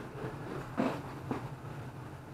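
Faint handling and movement noise as a hobby quadcopter is reached for and picked up: two brief soft rustles about a second in and shortly after, over a low steady hum.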